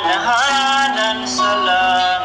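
A Tagalog Christian praise and worship song: a sung vocal line over instrumental accompaniment.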